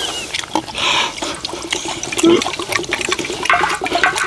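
Water poured from a plastic bottle into a small metal cup, rushing in spells about a second in and near the end. A spoon clicks and scrapes against a large iron griddle pan throughout.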